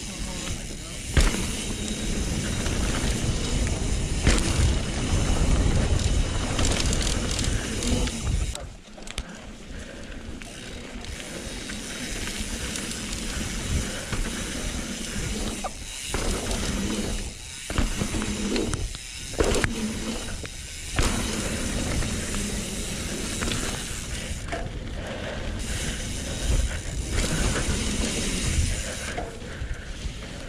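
Mountain bike being ridden fast over dirt trails, heard from a helmet camera: wind buffeting the microphone and tyres rumbling over the dirt, with sharp knocks over bumps and landings, and a few short quieter moments in the middle where the rider eases off.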